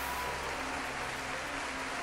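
Steady hiss with soft background music underneath, its low notes held and changing in steps.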